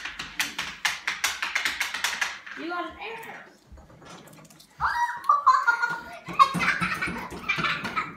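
Children's voices, unclear and wordless or indistinct, with a run of quick clicks in the first couple of seconds.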